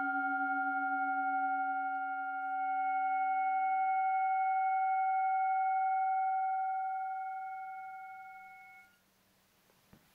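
A singing bowl ringing out after being struck: several steady overtones with a slow wavering beat. The lowest tone dies away within the first few seconds and the higher ones fade until the ring cuts off about nine seconds in.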